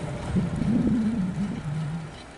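CSX freight train moving off after passing the crossing: a loud, low rumbling drone that wavers, settles to a lower pitch near the end, and then fades.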